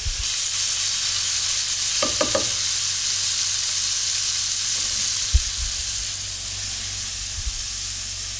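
Chopped tomatoes and onion-spice masala sizzling steadily in hot oil in a frying pan over a high flame, cooking down into a sauce. A single sharp knock sounds about five seconds in.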